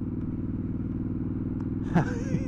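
Triumph Scrambler 1200's parallel-twin engine and exhaust running at a steady cruise, heard from on the bike. The engine note holds one even pitch, with no revving or gear change.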